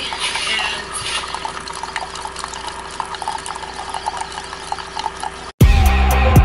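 Single-serve K-cup coffee maker dispensing coffee into a ceramic mug: a steady pour of liquid with small drips and a steady low hum. Background music with a beat cuts in suddenly near the end.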